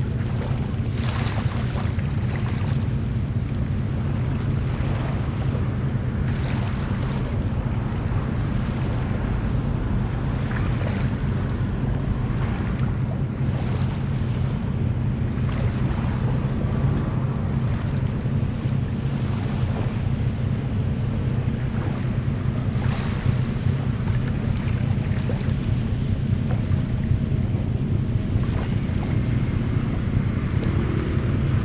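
Seaside wind and sea: a steady low rumble of wind on the microphone, with soft washes of small waves swelling every few seconds.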